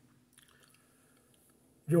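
A pause in a man's speech: near silence with a few faint mouth clicks about half a second in, then his voice resumes near the end.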